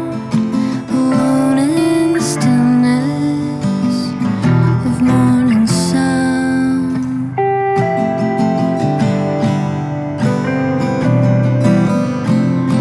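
Acoustic guitar and electric guitar playing together in an instrumental passage of a slow song, the electric guitar carrying a melodic line with sliding notes over the acoustic guitar's strummed chords.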